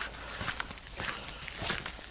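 Footsteps crunching on a gravel road, a run of faint irregular steps over a steady low rumble.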